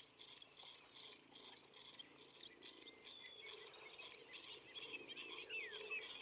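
Near silence: faint outdoor ambience with a steady high pulsing trill and, from about halfway, scattered distant bird chirps.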